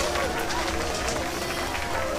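A man's voice holding one steady hummed note, which stops near the end.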